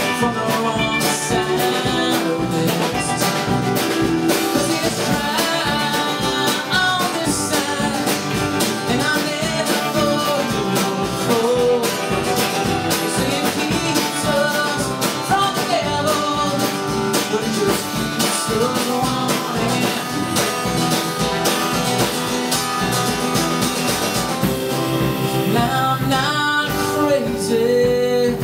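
A live country-rock band playing an instrumental stretch of a song: strummed acoustic guitar, electric guitar, bass and drums, with a lead line that bends its notes now and then.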